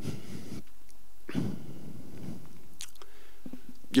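Soft breaths and small mouth clicks close to a handheld microphone, over a steady low hum from the sound system.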